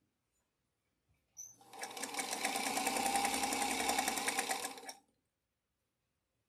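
Sewing machine stitching a seam through two fabric rectangles while chain piecing. A short click comes about a second and a half in, then a steady run of rapid, even needle strokes for about three seconds, which stops about five seconds in.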